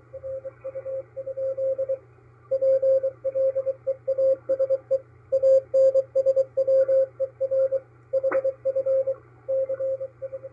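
Morse code from coast station KPH San Francisco on a shortwave receiver in upper sideband: a single tone keyed in dots and dashes, sending its call signs KPS and KPH and a request to answer, over a faint hiss and low hum. A sharp static crackle cuts in about eight seconds in.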